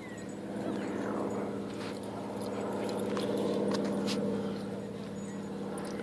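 A steady, low engine drone made of several even tones, growing louder to a peak a little past the middle and then easing off, with light scattered clicks over it.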